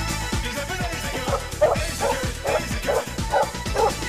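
A small dog barking repeatedly, about three barks a second, starting about a second in, over dance music with a steady beat.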